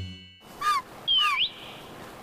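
Two short bird calls about half a second apart, each a quick falling chirp (the second one swoops down then up), over faint outdoor background.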